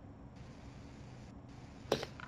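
Faint room noise with a low steady hum, then a single sharp click near the end.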